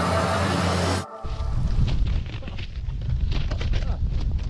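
A music track cuts off about a second in, giving way to a low rumble of wind buffeting an action camera's microphone and the scrape of a snowboard sliding over snow.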